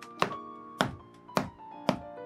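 Hammer striking a boot's rubber heel: four sharp blows about half a second apart, over background music.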